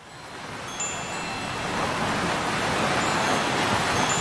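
Surf of breaking ocean waves, a steady rushing wash that fades in over the first second, with a few high wind-chime tones ringing through it.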